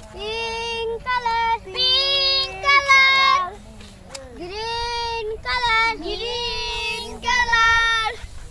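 A child singing a short high-pitched melody of held notes in several phrases, cutting in and stopping abruptly.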